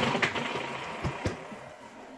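A flat mop applicator pad sliding across a hardwood floor while refinish is applied: a rubbing, swishing noise that starts suddenly and fades over about two seconds, with two light knocks about a second in.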